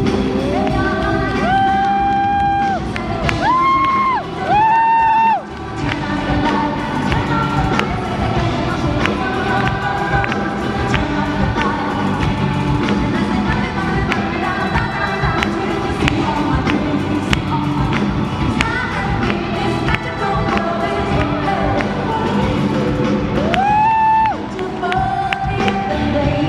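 Live pop music: a female lead singer holding long notes over a band with a steady beat.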